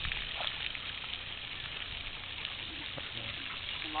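Pond water sloshing and lapping as a large dog wades and swims through it, over a steady background hiss.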